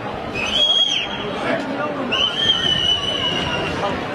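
Two long, high whistles over a steady babble of crowd voices: a short one about half a second in, then a longer one held for almost two seconds that sags slightly in pitch.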